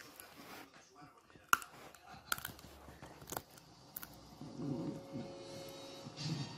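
A small terrier noses and mouths at a sunflower seed on a fabric couch. There are a few sharp clicks, the loudest about one and a half seconds in, then a low, short voice sound near the end.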